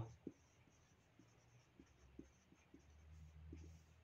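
A marker pen writing on a whiteboard, heard very faintly as scattered small ticks of the tip against the board.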